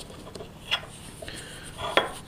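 Faint rubbing of fingertips working a paste of bicarbonate of soda and water onto a coin, with a soft click about three-quarters of a second in and another near the end.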